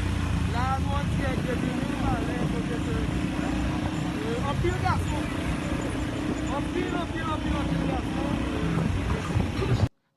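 Night street sound recorded on a phone: a steady low rumble of vehicles with many scattered voices calling out around it. It cuts off abruptly just before the end.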